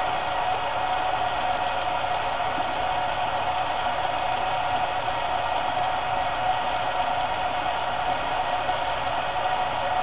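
Tap water running steadily into a sink.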